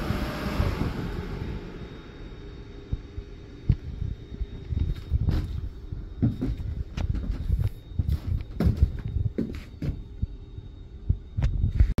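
Laser cutter's exhaust blower running with a steady low hum. A rush of air fades over the first second or two, and irregular low thumps and knocks sound over the hum.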